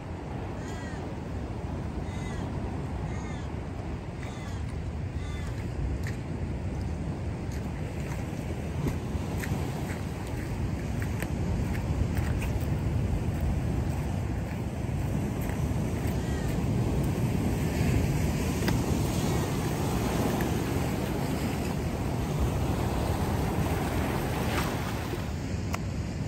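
Surf washing against a rocky shore with wind on the microphone, a steady rushing noise that grows a little louder in the second half. Short high bird calls come through a few times in the first five seconds and again around sixteen seconds.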